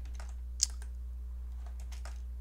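Computer keyboard keystrokes: a few light clicks, one sharper than the rest about half a second in, over a steady low hum.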